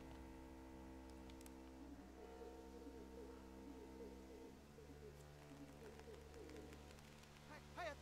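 Faint woodland birds calling over a soft sustained low musical drone. The bird calls grow louder and higher near the end.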